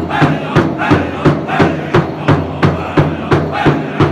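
A powwow drum group beating one large bass drum in unison with padded sticks, about three even beats a second, while the men sing together in a loud chant over the beat.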